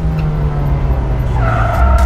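A car driving in close past and braking to a stop, its engine running steadily, with a short tire squeal near the end.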